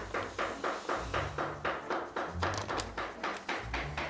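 Paper bag of semolina crinkling and rustling as it is tipped and shaken to pour the grain out, a quick, uneven run of crackles.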